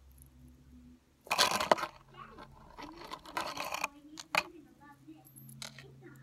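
Hands handling a metal necklace and chain close to the microphone: two bursts of rustling and clinking in the first half, then a sharp click about four seconds in.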